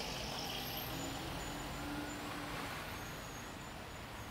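Steady low background rumble of distant road traffic, with a faint brief hum in the middle.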